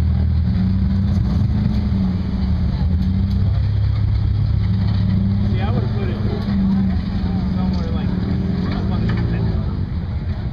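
Competition rock-crawler buggy's engine running throughout, its pitch and level rising and falling as it is throttled up and down while crawling over rocks.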